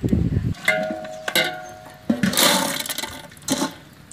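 Water splashing and rushing, loudest in a short rush about two seconds in, with a few knocks.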